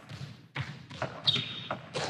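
Basketball being dribbled on a court: a few irregular thuds over a steady hiss of background noise.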